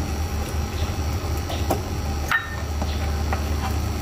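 A spatula stirring simmering broth in a granite-coated pan: a few light clicks and scrapes against the pan over a steady low hum.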